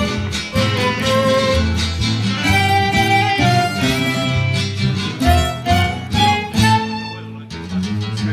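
Live Ayacucho-style band music: a violin carrying the melody over strummed guitar and bass. Near the end it breaks off briefly and a new section starts.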